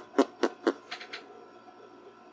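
A quick run of light, sharp clicks or taps about a quarter second apart, the last two fainter, dying away after a little over a second.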